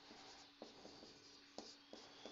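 Faint scratching of a marker pen on a whiteboard as a line and characters are written, with a few light ticks as the tip meets the board.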